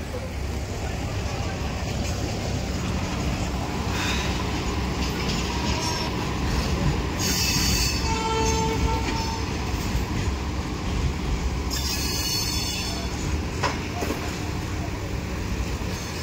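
Heavy diesel construction machinery running steadily with a low rumble. Two bursts of high hissing come about seven and twelve seconds in, with a brief squeal between them.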